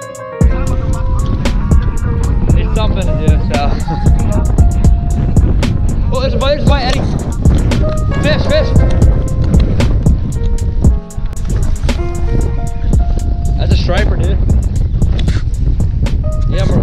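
Strong gusty wind buffeting the microphone, a continuous low rumble, with background music playing over it.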